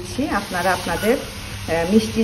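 Granulated sugar pouring from its bag into a copper measuring cup, a soft steady hiss, under a person's voice talking.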